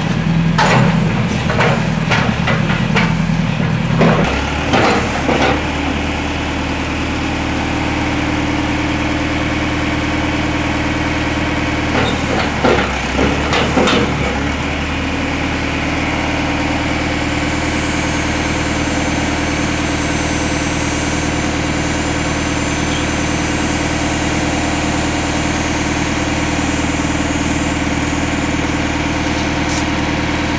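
Backhoe loader's engine running steadily, with clusters of knocks and scraping as its bucket works broken concrete slab in the first few seconds and again about twelve to fourteen seconds in; after that the engine idles evenly with no impacts.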